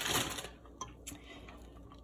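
A spoon stirring egg noodles into a pot of soup: a brief soft swish of liquid, then a quiet stretch with a couple of faint light clicks.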